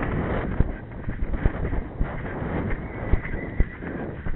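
A pony's hooves thudding on a sand arena at a canter, a run of uneven dull beats over a rushing noise of movement.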